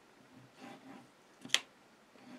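Hands handling a wet-glue squeeze bottle over card: faint handling sounds, then one sharp click about one and a half seconds in.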